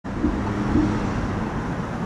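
Motor traffic running close by: a steady rush of car engine and tyre noise with a low hum.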